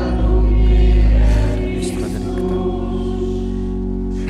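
Church organ and congregation singing the short sung response after the Gospel reading. It is held on steady chords, loudest in the first second and a half.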